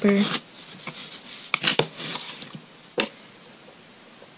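Plastic scraper scraped across a steel nail-stamping plate to wipe off excess polish, in a few short scratchy strokes, then one sharp click about three seconds in.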